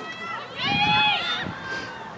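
A spectator's long, high-pitched shout, held for most of a second about halfway through, with other voices talking before and after it.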